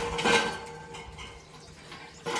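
Sheep feeding at a trough, with light clattering and rustling that is loudest in the first half second and then fades.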